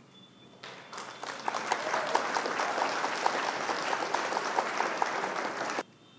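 Applause sound effect: a crowd clapping. It fades in under a second in, holds steady, and cuts off suddenly near the end.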